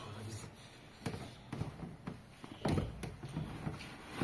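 Scattered knocks and clunks from a Skoda Favorit's front seat being pulled and worked loose by hand.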